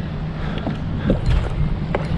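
Wind buffeting the microphone, a steady low rumble, with a few faint clicks.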